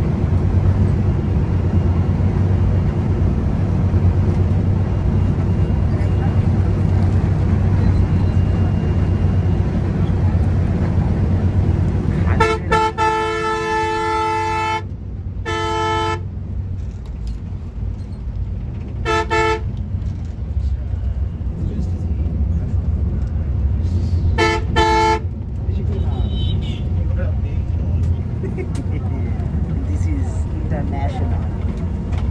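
Inside the cab of a Volvo multi-axle bus: the engine and road noise drone steadily at speed. A little under halfway through, the bus's horn sounds in one long blast, then shorter blasts follow, with a quick double blast near the end.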